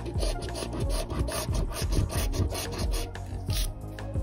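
A coin scratching the coating off a paper scratch-off lottery ticket in quick repeated strokes, about four a second.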